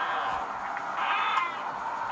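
A cat meowing once, a short arching cry about a second in, played back through tablet speakers over a steady hiss.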